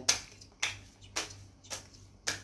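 A deck of tarot cards being shuffled by hand, with four sharp card slaps about half a second apart.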